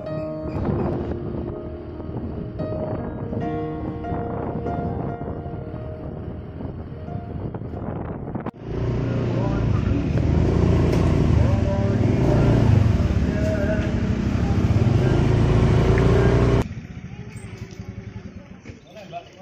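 Background music with steady melodic notes, then an abrupt cut about halfway in to loud motorcycle riding noise: engine rumble with wind rushing over the microphone. This stops suddenly near the end, leaving quieter outdoor sound.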